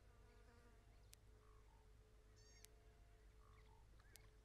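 Near silence: faint outdoor ambience with a steady low hum, a few brief faint chirping calls and two sharp clicks.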